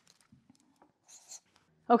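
Felt-tip marker writing on a whiteboard: faint scratching strokes, the clearest a short burst about a second in.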